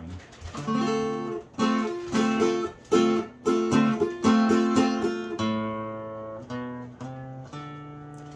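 Acoustic guitar strummed: a quick run of chord strokes on a chord barred at the fifth fret, with fingers added one and two frets above the bar, then slower chords left ringing and fading near the end.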